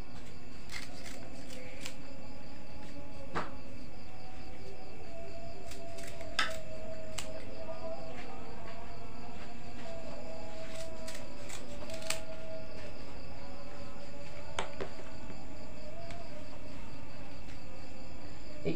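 Occasional sharp clicks and light rustles of banana leaves being folded and wrapped by hand, over a steady high insect trill and a faint wavering tone in the background.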